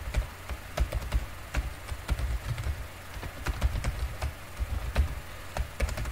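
Typing on a computer keyboard: irregular keystroke clicks, two or three a second, each with a dull low thud beneath.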